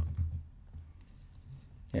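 A few faint clicks from a computer keyboard and mouse while switching between desktop windows.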